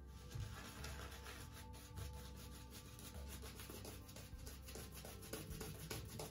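Boar-bristle shaving brush scrubbing shaving-soap lather onto a stubbled face: a faint, rapid, scratchy rubbing of many quick strokes.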